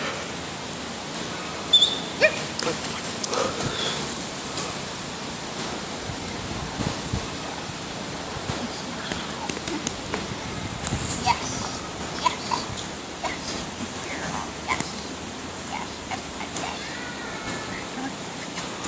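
Steady outdoor background hiss with scattered faint clicks and a few brief high chirps, and a voice heard faintly now and then.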